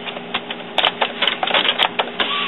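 Epson WorkForce inkjet printer's mechanism working through its ink cartridge check: a run of irregular clicks and ticks over a steady motor hum as the print carriage moves.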